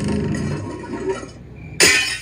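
Music from an inserted cartoon soundtrack, fading over the first second and a half, with a sudden loud burst of noise near the end.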